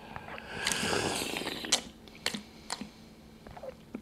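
Tea slurped from a small tasting cup: a long airy sip drawing air in with the tea, lasting about a second. A few small clicks follow.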